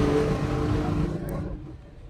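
A motor vehicle engine running with a steady hum that fades away over the first second and a half.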